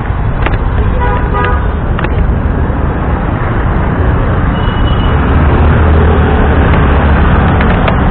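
Busy road traffic with a steady, loud low rumble, and a short vehicle horn toot about a second in.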